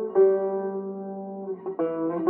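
Background music on a plucked string instrument. A chord is struck just after the start and left to ring, and a new chord is struck near the end.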